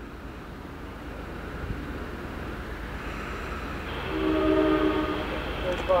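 Long Island Rail Road diesel train drawing toward the station, its rumble growing steadily louder. About four seconds in the locomotive sounds its multi-chime air horn once, a chord held for just over a second.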